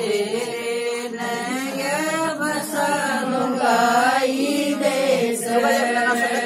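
Women's voices singing a Haryanvi folk song (lokgeet) in long, held, wavering lines, chant-like and without a clear instrument.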